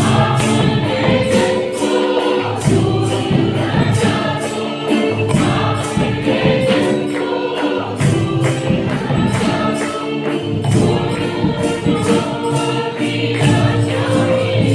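Mixed choir of women's and men's voices singing a worship song together through microphones, over a steady percussion beat.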